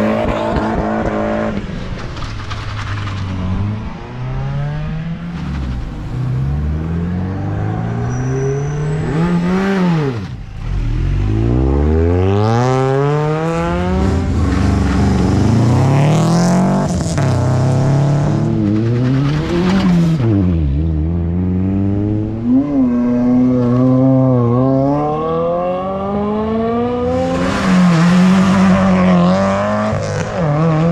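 Hill-climb race cars accelerating hard up the course one after another. Each engine's pitch climbs and drops back at every upshift, with a short lull about ten seconds in before the next car goes.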